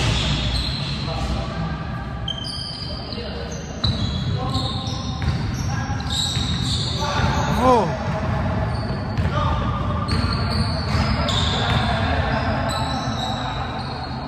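Basketball game on a hardwood court: sneakers squeaking repeatedly as players run and cut, a ball bouncing, and players' voices, with one loud shout about eight seconds in.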